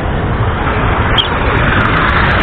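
Street traffic with a minibus engine running close by: a steady low engine hum under road noise, growing a little louder toward the end.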